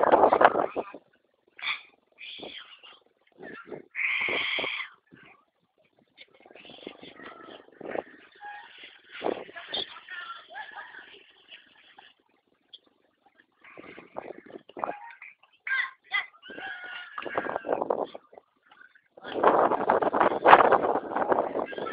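Players' voices shouting and calling in short bursts, with a longer call about four seconds in and scattered sharp knocks.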